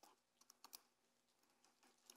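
Near silence, with a few faint clicks and crinkles of small communion cups and their wrappers being handled, about half a second in.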